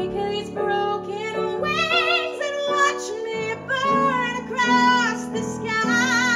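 A woman singing live in a belting musical-theatre style, a run of strong held notes with wide vibrato, over piano accompaniment.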